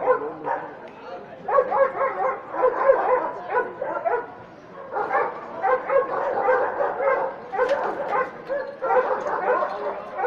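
German Shepherd lying on its side, whining and yelping in runs of short, wavering high cries with brief pauses between them, the sound of a dog in distress.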